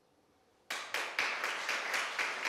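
Silence, then an audience starts clapping less than a second in and keeps applauding.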